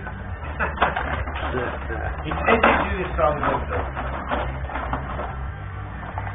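Clacking and rattling of a Benej rod hockey table in play: rods sliding and spinning, and figures knocking the puck, with sharper knocks about a second and two and a half seconds in.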